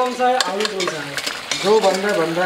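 A metal spatula stirring a simmering, sizzling curry in an iron kadai over a wood fire, with a few sharp clicks of the spatula against the pan about half a second in.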